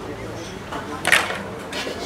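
Low background voices and room noise, with a short sharp scrape or clink about a second in and a fainter one near the end.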